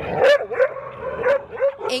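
Dogs barking and yelping: a quick run of about four or five short barks in two seconds.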